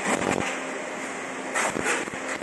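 Fiber laser marking stainless steel: a hissing crackle from the beam striking the metal, louder at the start and again near the end, over a steady machine hum.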